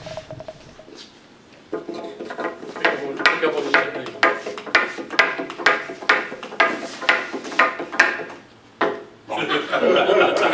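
Wooden ramp-walker toy, a scroll-sawn kangaroo, stepping down a sloped wooden board. Its swinging feet tap the wood in a regular clacking, about two to three steps a second, for around five seconds.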